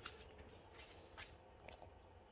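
Near silence: room tone with a low steady hum and a few faint ticks.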